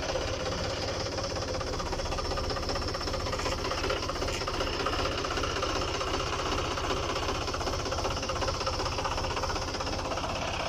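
John Deere tractor's diesel engine idling steadily, with an even, fast knocking beat.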